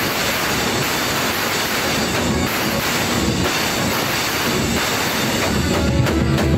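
Loud live band music, heard as a dense, distorted wash without a clear beat, before the drums come back in.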